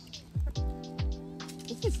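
Background music with a steady bass-drum beat under held chords; a voice speaks briefly near the end.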